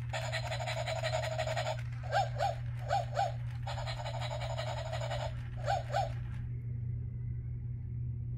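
Battery-operated plush toy puppy making electronic barking sounds: three quick double yips, between two stretches of a rapid pulsing sound, all stopping about six and a half seconds in.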